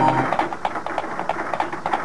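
Cartoon sound effect of a pair of carriage horses' hooves clip-clopping, a quick, even run of knocks, about seven a second. Background music stops just as the hoofbeats begin.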